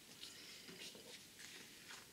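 Near silence with a few faint, short rustles of small cardstock tags being slid and laid on a sheet of paper.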